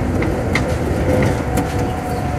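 MIA Mover, a rubber-tyred Mitsubishi Crystal Mover people-mover car, running at speed along its elevated guideway, heard from inside the cabin: a steady low rumble with a few light clicks and knocks.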